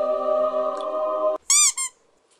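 A woman's voice holding one long sung note, which breaks off about a second and a half in, followed by two short, high-pitched squeals that each rise and fall.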